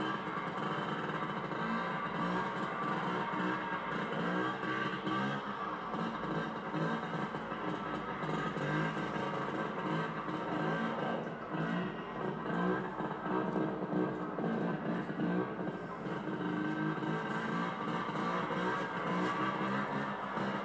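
Vespa scooter engine running steadily during a wheelie, mixed with guitar music.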